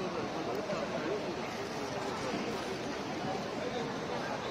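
Indistinct chatter of several people, voices overlapping, over a steady background hum of a large hall.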